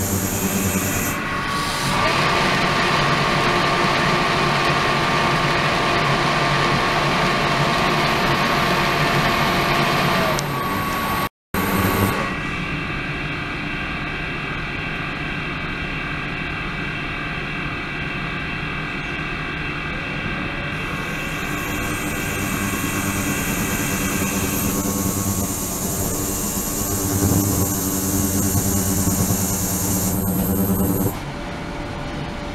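Ultrasonic cleaning tank with circulating water running: a steady hum and hiss with several fixed tones. It shifts in character a few times, and drops out briefly about eleven seconds in.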